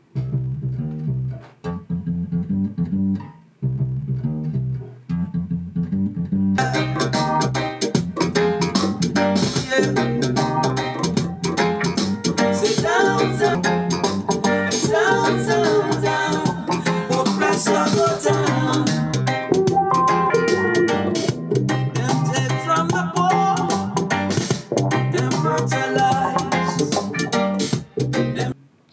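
Electric bass guitar playing a reggae bass line, alone for about the first six seconds in short repeated phrases with brief gaps. Then a fuller reggae backing track joins it and plays under the bass.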